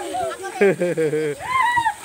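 Children's voices shouting and calling, with a short high-pitched cry about one and a half seconds in.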